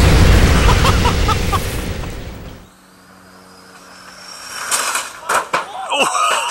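Logo-intro sound effect: a loud boom with a low rumble that fades out over the first two and a half seconds. After a quieter gap, street sound comes in near the end, with a few sharp knocks and a voice.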